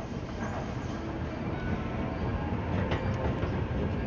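Airport moving walkway running with a steady low mechanical rumble, with a couple of light clicks about three seconds in.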